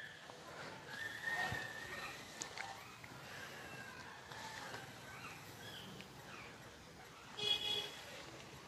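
Faint outdoor garden ambience with scattered distant bird chirps, and one brief, louder call near the end.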